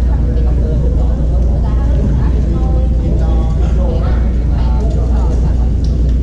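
Echoing ambience of a large gymnasium: a steady, loud low rumble with indistinct voices of people in the hall, louder around the middle, and a few sharp knocks.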